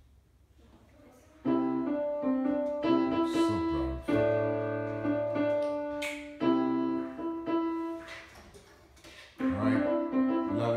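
Electronic keyboard playing a slow, simple melody of single held notes, starting about a second and a half in. It pauses briefly near the end, then the playing starts again.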